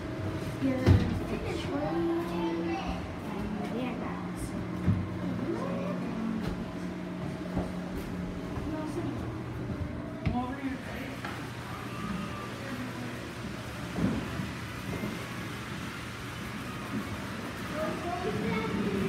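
Indistinct background voices over a steady low hum, with a few sharp knocks, the loudest about a second in.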